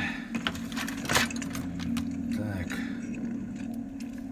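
Soundtrack of a war film playing on a television in the room: a steady low hum, faint voices, and one sharp knock or click about a second in.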